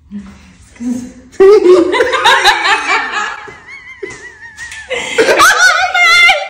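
People laughing hard, with a high-pitched wavering squeal of laughter about halfway through.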